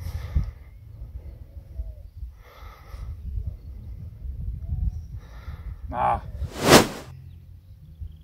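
Low wind rumble on the microphone, with a few short, muffled voice sounds. Near the end comes one loud, brief swish.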